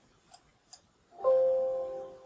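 Two faint computer mouse clicks, then, a little over a second in, a Windows system chime rings out as an information dialog pops up. The chime is a bell-like chord of several steady tones that starts suddenly and fades away over about a second.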